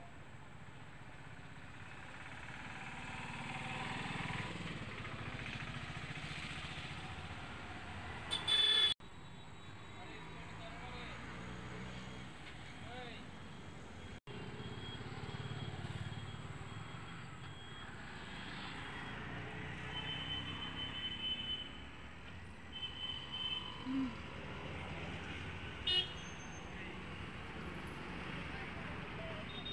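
Steady outdoor background noise with a low rumble like distant traffic and faint voices. A short loud burst comes about eight seconds in and cuts off abruptly, and a few short high toots sound in the second half.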